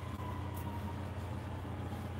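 Steady low background hum in a room.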